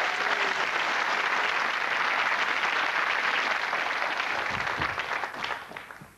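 Studio audience applauding, steady and then dying away near the end.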